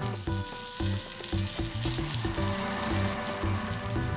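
Thin ragi (finger millet) batter sizzling on a hot cast-iron pan as the ghavan cooks. The sizzle cuts in suddenly at the start and holds steady, with rhythmic background music underneath.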